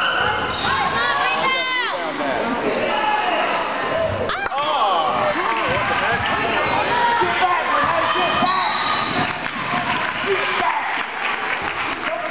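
Basketball game play in a gym: the ball bouncing on the hardwood floor and sneakers squeaking as players move, with shouting voices and the hall's echo. A single sharp knock comes about four and a half seconds in.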